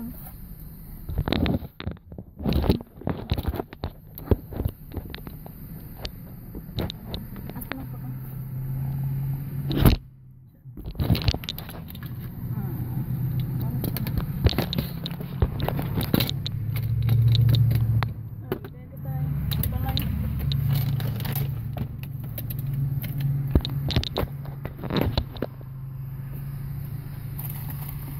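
Paper and foil fast-food wrappers crinkling and rustling in irregular crackles as food is unwrapped and handled inside a car cabin, over a steady low hum.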